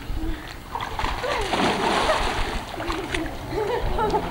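A child jumping into a swimming pool: a big splash about a second in, then voices as the water settles.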